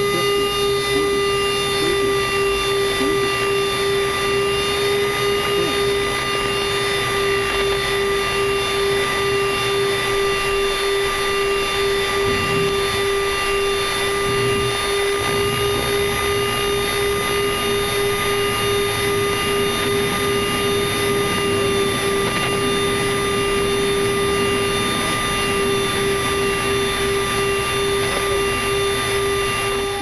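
Boeing 737-300 flight-deck noise during the landing rollout: a steady rush of engine and airflow noise with a constant hum over it, unchanging throughout.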